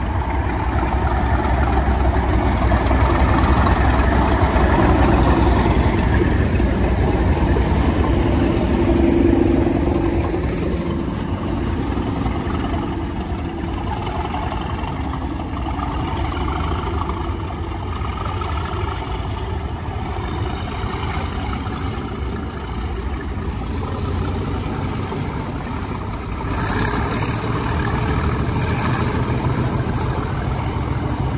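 Class 37 diesel locomotive's English Electric V12 engine running as it draws a dead Class 317 electric unit slowly along the platform, loudest in the first ten seconds, then the rumble of the unit's wheels on the rails. A high squeal rises near the end.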